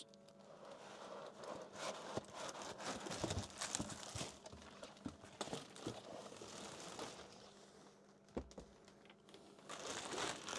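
Plastic bag wrapping rustling and crinkling as a boxed battery is pulled out of its bag, with scattered small crackles, then a single dull thump a little over eight seconds in.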